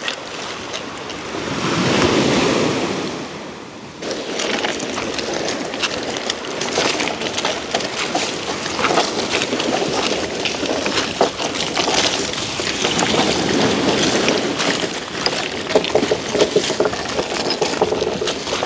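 Small waves breaking and washing over a cobble-and-pebble beach, with stones clicking and rattling throughout.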